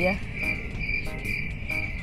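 Crickets chirping: a high, even chirp repeating about two to three times a second over a steady high trill.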